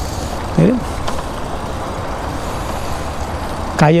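Steady rushing noise with a low rumble, the wind and road noise of moving along a street. There is a short voiced sound about half a second in.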